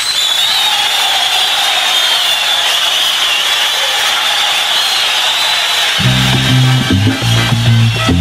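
Live salsa band recording: a sustained, noisy high wash with a wavering high tone holds for about six seconds, then the bass and band come back in with a low repeating figure.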